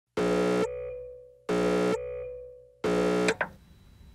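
Music: three loud synthesizer blasts, each a dense chord held for about half a second and then fading, struck about a second and a half apart. The third is cut off short.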